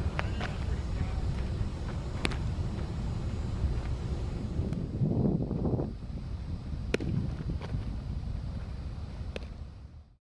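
Wind rumbling on the camera microphone, with a few sharp pops of a baseball smacking into a glove, the clearest about seven seconds in; faint voices about five seconds in.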